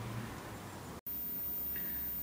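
Quiet outdoor background hiss with no distinct source, cut off abruptly about a second in by an edit, after which a slightly different steady background continues.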